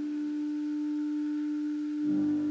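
Clarinet holding one long, steady note.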